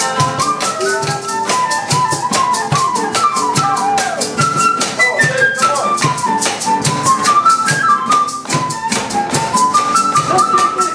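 Live Latin band playing an instrumental passage: an end-blown flute carries a moving melody over a fast, steady shaker rhythm and the low beat of a cajón box drum.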